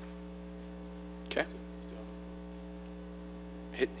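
Steady low electrical mains hum with a ladder of buzzing overtones, running under a lull in the talk.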